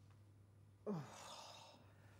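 A person's short voiced "ugh" falling in pitch, trailing into a breathy sigh about a second in, after near silence.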